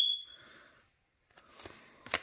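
Trading cards handled in the hand as one card is swapped for the next. A sharp click with a brief high ring comes right at the start, then faint sliding, then a few soft ticks near the end.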